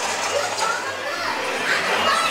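Indistinct voices from the dark ride's recorded soundtrack and riders' chatter, over a steady low hum.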